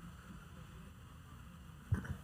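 Quiet press-room tone with a faint low hum, broken by one short low thump near the end, typical of a handheld microphone being handled as it reaches the next questioner.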